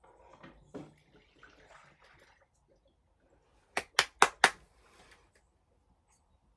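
A faint rustle, then four sharp knocks or clicks in quick succession about a fifth of a second apart, just before the middle.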